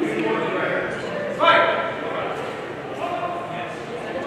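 Voices echoing in a large hall, with one louder voiced call about a second and a half in.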